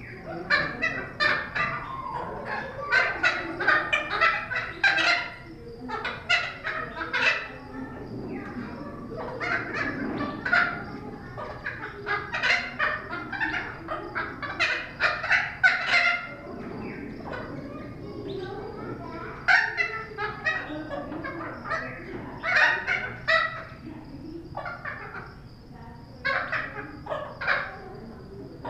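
Thick-billed parrot calling: short, loud calls repeated in bouts of several, with pauses of a second or two between bouts.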